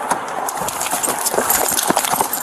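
Quick, irregular knocking and clatter with rustling, from a police body-worn camera being jolted and rubbed as the officer moves fast.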